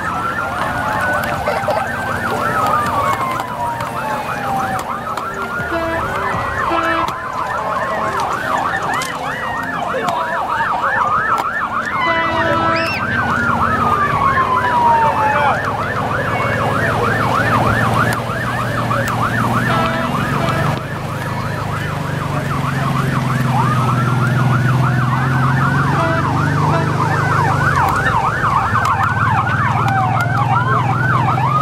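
Several sirens sounding together: a fast, repeating yelp overlapping slow wails that sweep down and up in pitch. A low vehicle rumble builds in the second half as trucks roll slowly past.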